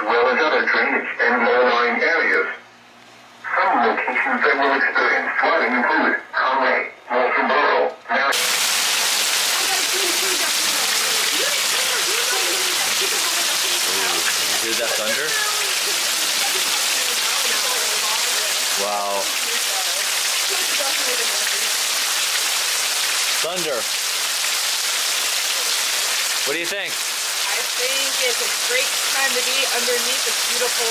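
A tinny, narrow-band announcer's voice from a weather-alert broadcast plays for the first eight seconds. It then cuts suddenly to heavy rain pouring onto pavement and grass, a loud steady hiss, with faint voices now and then.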